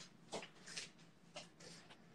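Faint, short puffs of breath, about five in two seconds, from a man breathing hard during mountain climbers.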